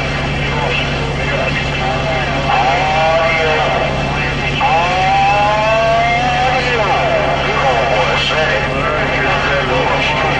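Superstar CB radio receiving on 27.285 MHz: steady static hiss with distorted, wavering voices of other operators coming through in several stretches, over a steady low hum.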